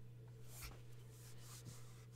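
Near silence: room tone with a steady low hum, and one faint, brief rustle about a third of the way in.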